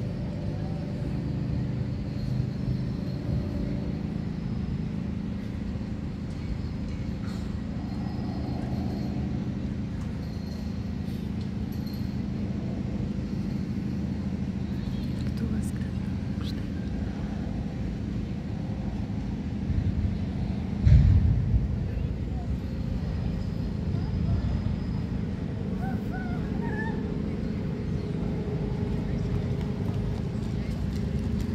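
Outdoor ambience of indistinct voices over a steady low hum, with a sudden loud low buffet or thump about twenty-one seconds in.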